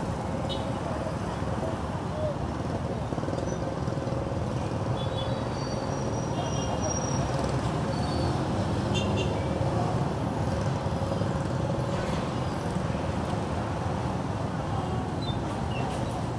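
Busy city street traffic: motorcycle taxi engines and other vehicles running steadily at a crowded junction, mixed with indistinct voices of people close by.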